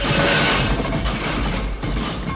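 Action-film soundtrack: music mixed with explosion and crashing-debris sound effects, loudest in the first half-second, then a run of sharp clatters and knocks.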